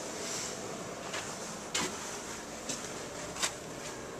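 A few light, sharp knocks and clicks, the loudest a little under two seconds in, over a steady background hiss.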